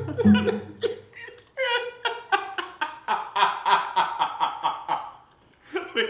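A man laughing hard in a long run of quick, even 'ha' pulses, breaking off for a moment and starting again near the end. Plucked bass music fades out about a second in.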